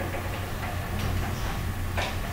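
Steady low hum with faint light ticks, roughly one a second, from the room through the call's open microphone.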